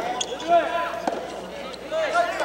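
Voices calling out in a large indoor arena, loudest about half a second in, with a couple of short sharp knocks such as a soft tennis ball bouncing on the court.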